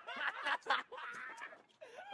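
A man snickering and chuckling in short, broken bursts.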